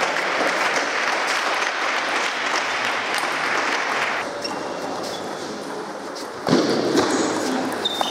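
Applause and crowd noise in a large sports hall for about the first four seconds, then quieter hall noise with light taps of a table tennis ball bouncing, and a second short burst of crowd noise near the end.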